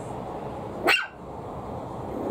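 Maltese puppy giving one short, sharp bark about a second in, sweeping up in pitch.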